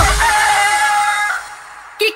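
A rooster crowing at the close of a Bhojpuri song: one long wavering call over the last of the music, which fades out about a second and a half in.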